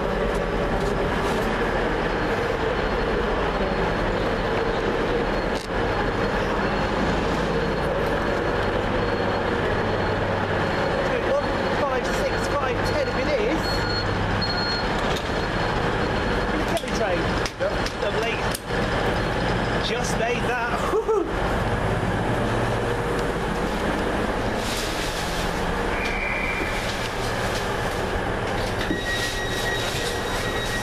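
Busy railway station ambience: background voices, footsteps and the steady running of trains standing at the platform. A couple of short electronic tones sound near the end.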